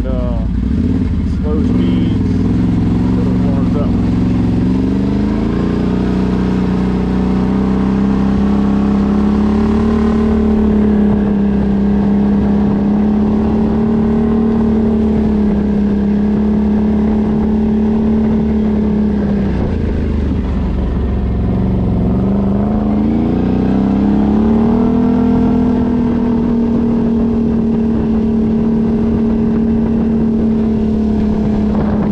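2022 Can-Am Outlander 850 XMR's Rotax V-twin engine, with a CVTech primary clutch, pulling away and running at a steady cruise on a warm-up ride. Its pitch rises over the first few seconds and holds, dips about two-thirds of the way through as it slows, then rises again and holds.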